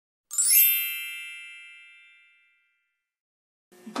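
A bright, bell-like chime struck once, ringing with many high overtones and fading away over about two seconds.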